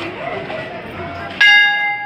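Large hanging bronze temple bell struck once about one and a half seconds in, ringing on with several steady tones.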